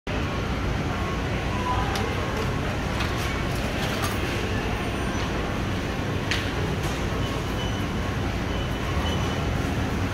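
Steady mechanical hum at an even level, with a few light clicks and a short knock about six seconds in.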